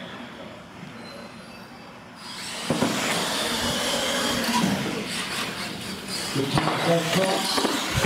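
Radio-controlled monster trucks launching and racing side by side: after about two seconds of quiet the motors, drivetrains and tyres start up and keep running hard, with a sharp knock about a second later and another near the end.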